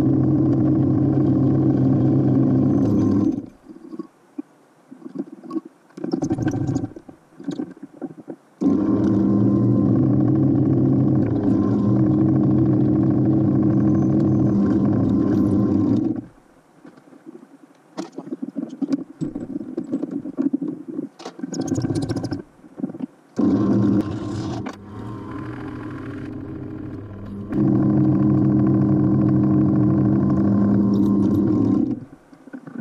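Benchtop drill press motor running with a steady pitched hum while drilling holes in a copper busbar bar. It is switched off and on several times: about three seconds on, a pause, about seven seconds on, a brief burst, and on again near the end. In the pauses, the cross-slide vise is wound and metal clatters and scrapes.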